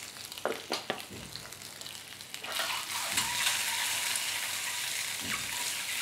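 Peeled boiled eggs frying in hot oil in a stainless steel pan, sizzling. A couple of light clicks come in the first second, and the sizzle gets louder about two and a half seconds in.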